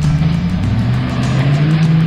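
Land Rover Defender engine revving as it climbs a rock ledge, its pitch rising about a second in, mixed with a rock music soundtrack.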